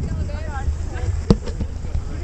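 A steady low rumble of wind on the microphone with faint voices, and one sharp handling knock on the camera about a second and a quarter in.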